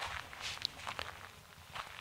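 A few faint footsteps on a dirt forest path.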